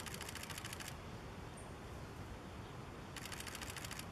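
Two bursts of rapid camera shutter clicks, about a dozen a second from a camera shooting in continuous mode: the first lasts about a second, the second starts about three seconds in.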